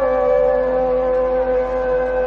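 Hindustani classical singing voice holding one long, steady note in raga Hamir, settling slightly lower in pitch at the start.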